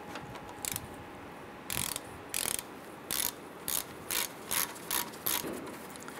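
Ratchet wrench with a 15 mm socket loosening a brake caliper bolt. Its pawl clicks in short bursts about twice a second on each back-swing.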